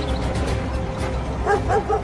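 Search dogs barking, a few short barks starting about one and a half seconds in, over a low steady music drone.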